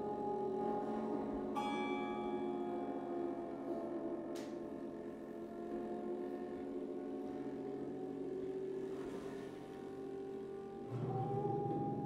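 Acoustic guitars played with bows, giving a dense drone of sustained, overlapping tones. A bright note rings out about one and a half seconds in, and a fuller, lower layer of tones enters near the end.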